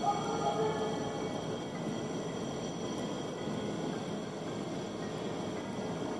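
An unidentified drawn-out wailing noise outside at night, which sounds almost like a whale or high-pitched singing. It holds several steady pitches at once through the first second or so, then fades to a faint steady background.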